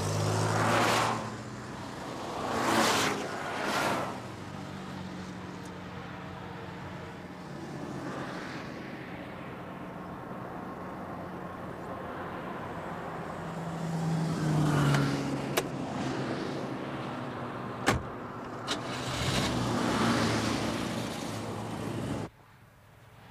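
Cars passing at speed on a motorway: several rushing pass-bys over a steady low engine drone, the loudest near the start and a drawn-out one about two thirds of the way in. A few sharp clicks come in the second half.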